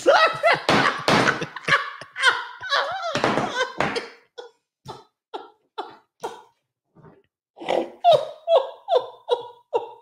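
A woman laughing hard: a long unbroken run of laughter for the first four seconds, then short separate bursts about twice a second, a brief lull, and a fresh round of laughter about eight seconds in.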